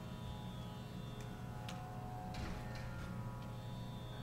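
A steady drone of several held musical tones, with no singing yet, and a few faint clicks scattered through it.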